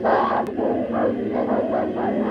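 A choir of many voices singing overlapping, wavering notes: the start of a piece of choral music.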